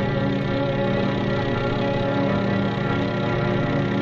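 A steady engine-like drone as the cartoon torpedo is launched, under a held orchestral chord.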